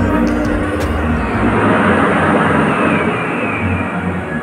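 Film soundtrack of a 7D motion-ride show played over theatre speakers: music under a deep, steady rumble, with a hiss that swells to a peak about two seconds in and then eases.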